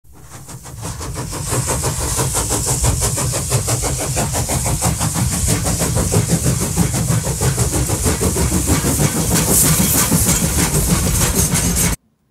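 Sound of a train running, with a fast, even beat; it fades in over the first second or two and cuts off suddenly at the end.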